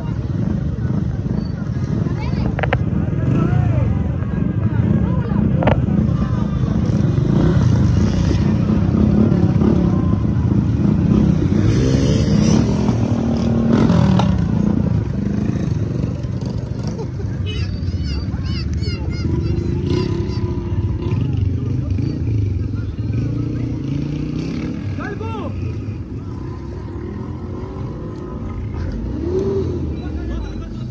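Several small motorcycle engines running close by, under the chatter of a crowd of men.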